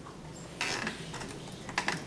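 Laptop keyboard typing: scattered key clicks, with a brief louder burst of noise about half a second in and a quick run of clicks near the end.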